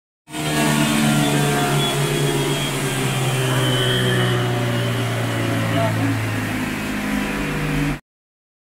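Honda Click 125 scooter's single-cylinder engine and CVT drive held at high revs at top speed on a chassis dyno, a loud, steady run of nearly constant pitch.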